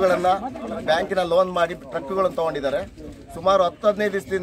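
A man's voice speaking continuously: speech only.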